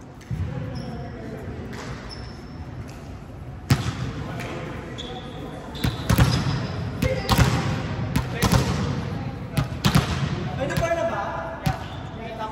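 Volleyballs being struck and bouncing on a hardwood gym floor: a string of sharp smacks, irregularly spaced and thickest in the second half, echoing in a large hall.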